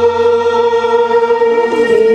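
A mixed group of men and women singing a Bengali devotional song to Durga in unison, holding one long note.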